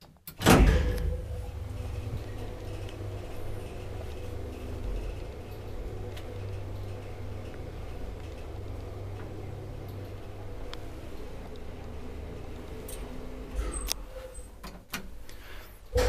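Schindler traction elevator car setting off with a low thump, then a steady low hum with a faint whine as the car travels between floors. A few clicks near the end as it slows and stops.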